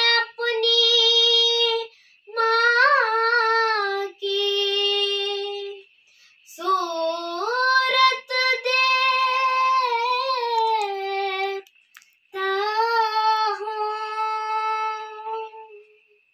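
A young girl singing a Hindi song unaccompanied, in five phrases of long held, slowly sliding notes with short breaths between them.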